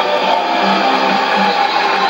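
Guitar music from a Radio Miraya shortwave AM broadcast on 11560 kHz, played through a Sony ICF-2001D receiver's speaker, with steady hiss from the shortwave band under it.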